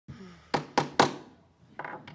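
Three sharp thumps in quick succession, about a quarter second apart, the last the loudest.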